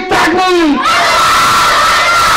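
A crowd of male voices, men and boys, calling out together in one long, loud shout, after a short gliding voice at the start.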